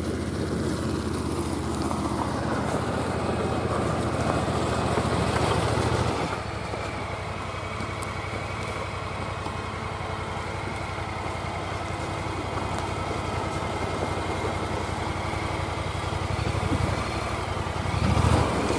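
Honda Pioneer 1000 side-by-side on rubber tracks, its engine running. It is louder for about the first six seconds, then eases off to a lower, steady run.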